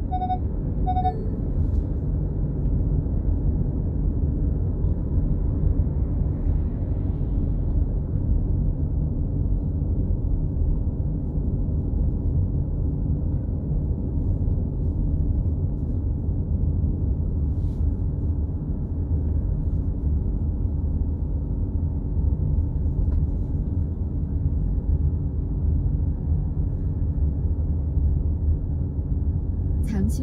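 Steady low rumble of tyre and engine noise from a moving car, heard from inside the car.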